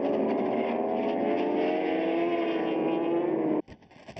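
Several racing superbike engines running at high revs, their pitches sliding slowly downward together. The sound cuts off abruptly near the end, leaving a much quieter stretch of scattered clicks and low rumble.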